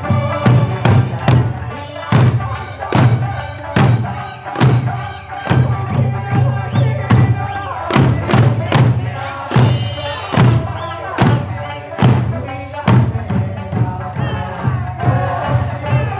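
Eisa drumming: large barrel drums and small hand drums struck together, about two beats a second, over a sung folk tune with dancers' shouts.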